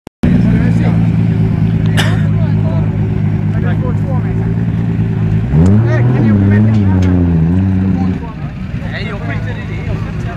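Tuned Toyota Supra's straight-six engine running loud and steady, then revved up sharply about halfway through and held at wavering high revs, as if for a launch. Its sound drops away sharply near the end.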